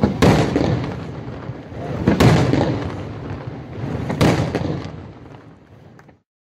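Aerial firework shells bursting: three loud booms about two seconds apart, each trailing off, with the sound fading away near the end.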